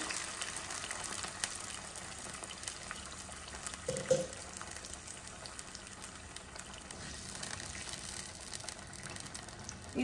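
Water pouring from a jug into a hot pan of vegetables, the stream thinning and stopping within the first second or two, then a faint steady sizzle from the pan. A brief sound about four seconds in.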